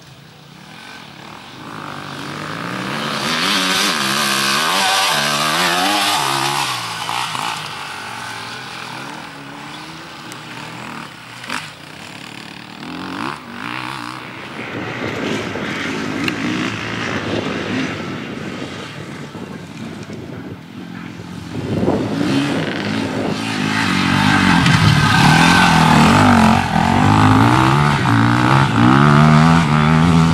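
Enduro dirt bike engines revving up and down, the pitch rising and falling with throttle and gear changes as the bikes pass. The engine sound is loudest over the last few seconds as a bike goes by close.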